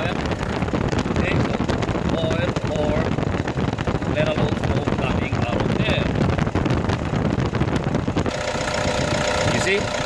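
Toyota D-4D diesel engine idling from a cold start, a steady rumble with fine rapid clatter. About eight seconds in it changes to a smoother, more even hum.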